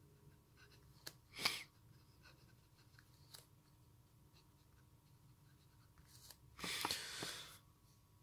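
Stainless-steel A nib of a Lamy abc fountain pen writing on lined paper: faint scratchy ticks of the strokes, with a louder brief scrape about a second and a half in and a longer rustle near the end.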